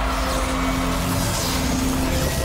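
Cinematic sound design: a low steady rumble with a held tone and an airy whoosh swelling about half a second in.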